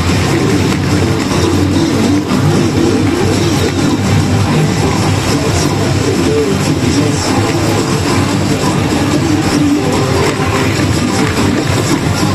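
Loud, steady music and effects from a Yajikita-themed pachinko machine during its rush mode, as the remaining spins count down.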